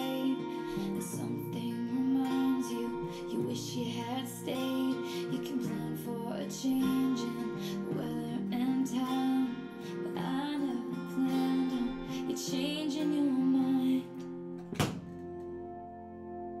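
Acoustic guitar strummed under a sung melody in a slow song. About fourteen seconds in the music drops away, with one sharp hit just before it dies down to quieter held notes.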